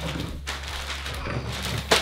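Wrapping paper rustling and crinkling as it is handled in a hurry, with small knocks among the crackle, over a steady low hum.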